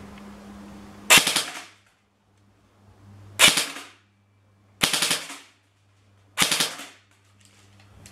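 CYMA MP5 airsoft electric gun firing on full auto in four short bursts, each about half a second long, with pauses between them.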